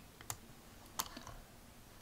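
A few faint, sharp clicks from a computer as a web page is opened: a couple close together near the start, then another about a second in.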